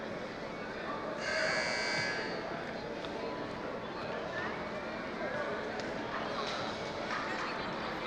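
A buzzer sounds once, about a second in, for a little over a second, over steady crowd chatter and background voices.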